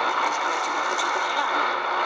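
Shortwave AM reception on an XHDATA D-808 portable receiver tuned to 7300 kHz: steady static hiss with the BBC World Service voice faded to faint traces beneath it.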